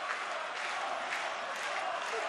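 Football stadium crowd: a steady din of many voices, with faint chanting in it.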